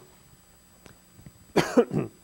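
A man coughing: a short double cough near the end, after a quiet pause.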